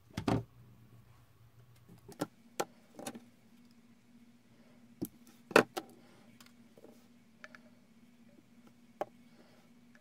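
Small glass bottles and plastic spray pump tops being handled and set down on a tabletop: scattered clicks and knocks, the loudest about five and a half seconds in.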